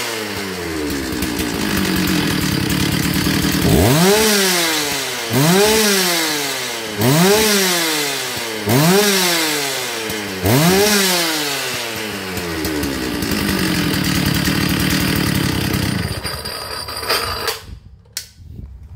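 Stihl 066 Magnum 92 cc two-stroke chainsaw idling, then revved hard five times in quick succession, each rev climbing and falling back to idle. It idles again and is shut off near the end.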